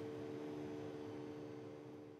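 Faint, steady hum of workshop machinery with a few low steady tones, fading slightly near the end.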